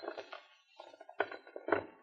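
Radio-drama sound effect of a suitcase being opened: a few short clicks and knocks from its catches and lid.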